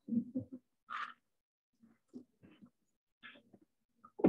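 Scattered short knocks, rustles and faint murmurs of people moving about a lecture room.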